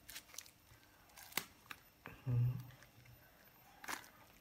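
Thin plastic bag crinkling with sharp little ticks as a knotted takeaway bag of broth is worked open by hand. A short low hum comes just past halfway and is the loudest sound.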